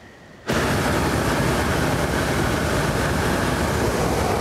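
Hot-air balloon propane burner firing just overhead: a loud, steady roar of flame that starts abruptly about half a second in.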